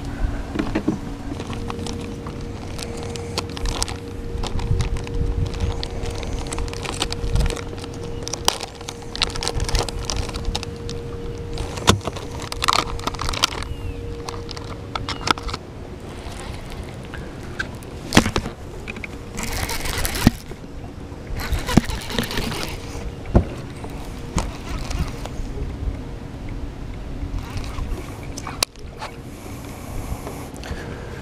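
Electric bow-mount trolling motor humming steadily, cutting off about halfway through, with frequent clicks and knocks from a baitcasting reel and tackle being handled and a few short rushing bursts of noise.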